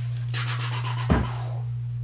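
Scraping and rustling from a rifle scope and gear being handled, then a single knock about a second in as something is set down, all over a steady low hum.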